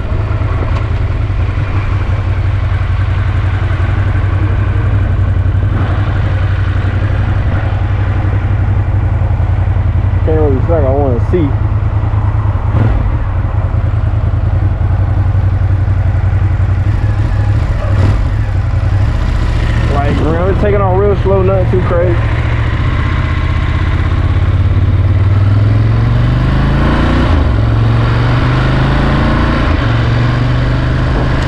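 A 2017 Ducati Monster 1200 S's L-twin engine running steadily at road speed, heard from the rider's seat. Near the end it revs up in rising steps as the bike accelerates. Twice near the middle a brief wavering, voice-like sound rises over it.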